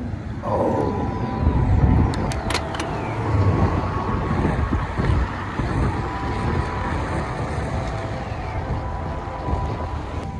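Wind rushing and buffeting over the microphone, with the road rumble of a bicycle ridden along rough city asphalt; the gusts swell and ease unevenly. A short falling whine sounds about half a second in.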